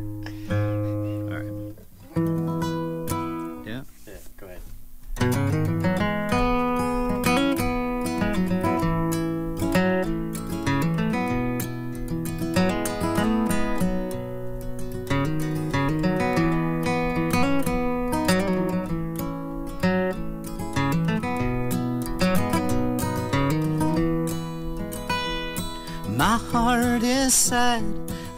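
Acoustic guitar and five-string banjo playing together. A few sparse plucked notes ring out first, then about five seconds in the two settle into a steady, evenly picked instrumental tune.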